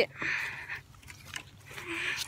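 Two heavy breaths close to the microphone, each a short breathy hiss, about a second and a half apart, as a person moves quickly through the woods.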